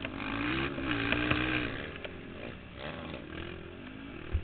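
Racing ATV engine heard from an onboard camera, revving under throttle with rough, noisy buffeting over it. It is loudest for the first two seconds and quieter after.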